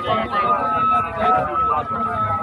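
Voices talking, with a steady high tone running underneath.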